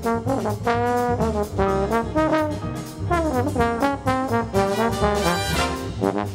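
Bass trombone playing a jazz solo line of separate notes, some held and some short, over the band's bass and drums.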